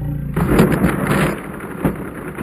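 Drill-powered spiral launcher running with a steady motor hum, then a loud rattling clatter from about a third of a second in as its cheap wooden spiral track breaks apart on the shot, with a sharp knock near the end.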